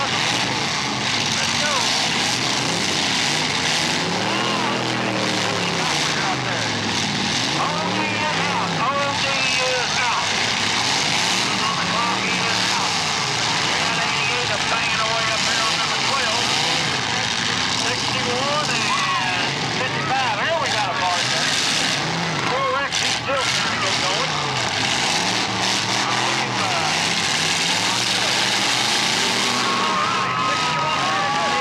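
Several demolition derby cars' engines revving up and down together through open exhaust stacks, their pitch rising and falling over a steady din as the cars ram one another.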